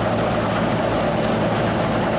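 Laverda combine harvester running steadily as it cuts standing wheat: an even engine and machinery drone with a constant low hum.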